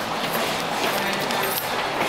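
Steady ambient noise of an underground shopping arcade: an even hiss with a few faint clicks.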